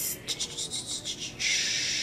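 Handling of a makeup eyeliner pencil: a few light clicks and scrapes, then a steady scratchy rubbing that starts about one and a half seconds in.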